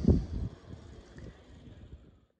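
Wind buffeting the microphone. A strong low rumbling gust comes in the first half second, then eases to a softer, steady rush of noise.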